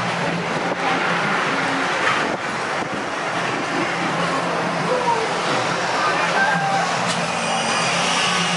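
Steady fairground night ambience: a continuous noisy rush over a low hum, with faint distant voices.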